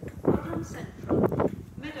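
Station public-address announcement: a recorded voice reading out the train's calling points and formation.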